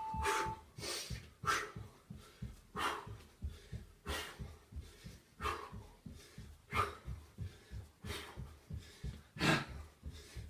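Hard, rhythmic breathing of a man jogging on the spot, with a forceful exhale about every second and a half over the quick, soft thuds of his feet on a floor mat. A short steady electronic beep ends just as it begins.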